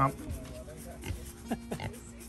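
Pigs grunting: about four short, falling grunts in quick succession, starting about a second in, over a faint steady low hum.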